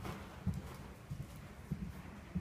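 Hoofbeats of a horse cantering on a soft arena surface: a run of dull, low thuds.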